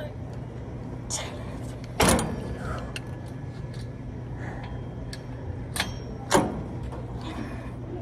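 Gym cable machine clanking: two sharp knocks about four seconds apart, with a smaller one just before the second, as the bar is worked. A steady low hum runs underneath.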